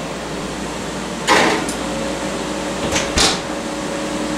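Oven door and a loaf pan of meatloaf being handled as the pan goes back into the oven: a clunk about a second in, then two quick clunks near the end as the door is shut, over a steady hum.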